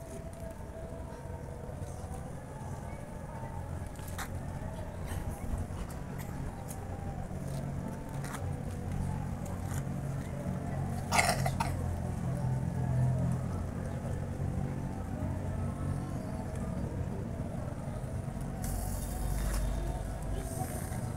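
Low background murmur of a gathered crowd with faint distant voices, a single sharp sound about eleven seconds in, and a hissing rush near the end as the bonfire flares up.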